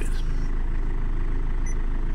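Diesel engine of an Optare Alero minibus idling, a steady low rumble heard inside the cab.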